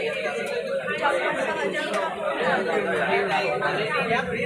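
People talking over one another: steady overlapping chatter.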